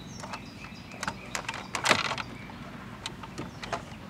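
Small plastic wiring-harness connector and dash trim being handled: a scatter of light plastic clicks and rattles as the locking tab is pressed and the plug is wiggled loose, the loudest click about two seconds in.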